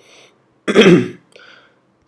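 A man clearing his throat: one loud throat-clear a little under a second in, then a fainter short one.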